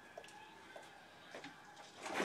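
Near silence: quiet room tone with a few faint, short ticks.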